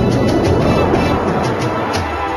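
Television programme theme music for the title sequence, with a noisy whooshing swell through the middle.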